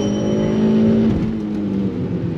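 Daihatsu Copen's engine running at steady revs under load, heard inside the cabin, its pitch dropping slightly about a second in.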